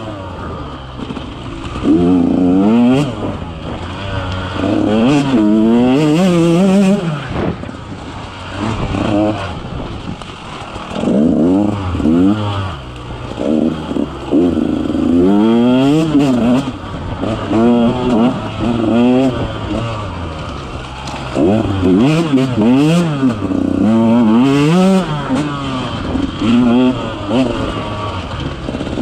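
KTM 150 XC-W two-stroke single-cylinder dirt bike engine being ridden on the throttle, revving up and dropping back again and again every couple of seconds.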